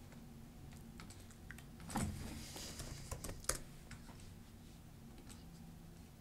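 Computer keyboard typing: a short run of faint key clicks, the loudest about two seconds in and again about three and a half seconds in.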